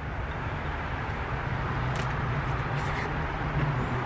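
Steady outdoor background noise with a low hum underneath and a couple of faint clicks in the middle.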